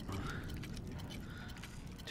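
Stethoscope being handled: faint, light metallic clinks and small rattles.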